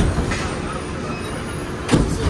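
Cabin noise inside a Walt Disney World monorail car: a steady rumble and hum, with a brief knock just before the end.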